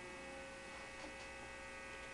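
Steady electrical mains hum, with the last ringing notes of a plucked string instrument fading under it. A faint click about a second in.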